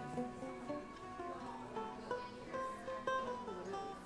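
A live band playing, with a plucked guitar to the fore.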